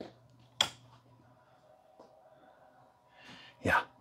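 Wall light switch flipped on in a quiet small room: one short sharp sound just over half a second in, then a faint click about two seconds in, over a faint low hum. A single spoken word comes right at the end.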